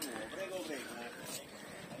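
Faint voices of other people talking in the background, with no close speaker and no other distinct sound.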